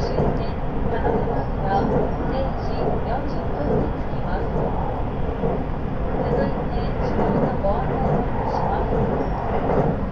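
JR West 681 series electric limited express train running, its steady rumble of wheels and running gear heard inside a passenger car, with indistinct voices over it.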